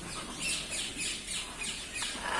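Parrots squawking in a quick run of short, high, falling calls, about four a second.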